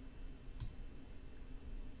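A single faint click about a third of the way in, from a computer mouse button, over quiet room tone.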